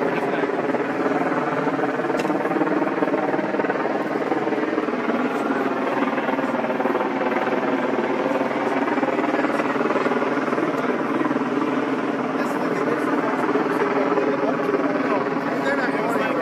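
A steady motor drone with a many-toned hum, running without a break and without changing pitch.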